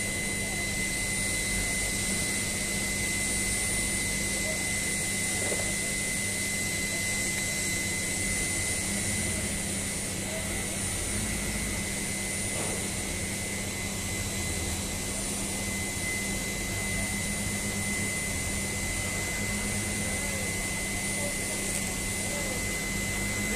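Steady industrial plant noise from power plant ash handling equipment: an even hiss with a constant high whine and a low hum.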